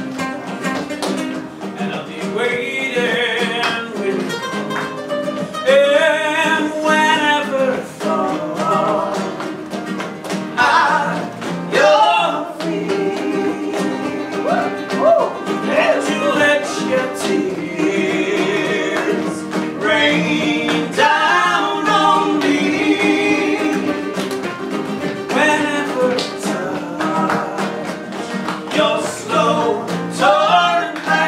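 Live flamenco-style song: a male voice singing sustained, wavering lines over acoustic guitars played in a steady rhythm, with hand claps (palmas) keeping time.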